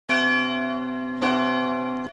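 A bell struck twice, about a second apart, each stroke ringing on with long steady overtones.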